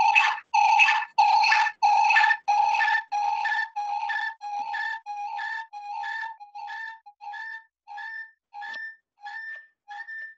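A pulsing electronic tone over the video-conference line, about two beeps a second, each a single steady pitch. The first beeps are loud with a hiss on them, and the train grows steadily fainter towards the end.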